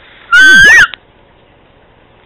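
A cat's meow about a third of a second in, about half a second long and loud enough to distort, with a wavering pitch.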